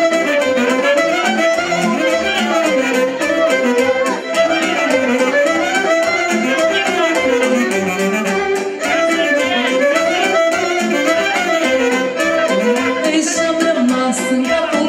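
Live Romanian folk dance music in the Maramureș style: a fiddle plays a winding, quick melody over a steady beat.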